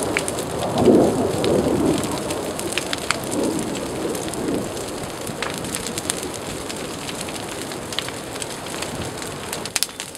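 Flames burning through palm fronds and pine foliage: a steady rushing with frequent sharp crackles and pops. The rushing swells twice in the first half and slowly eases toward the end.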